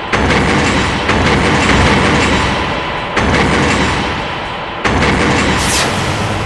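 Film soundtrack sound effects: four sudden loud booms like gunshots, each with a long echoing tail, spaced one to two seconds apart over dense background score. A whoosh follows near the end.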